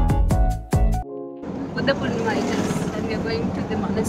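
Background music with a steady beat that cuts off about a second in, giving way to the steady running and road noise of a ride inside an auto-rickshaw, with faint voices.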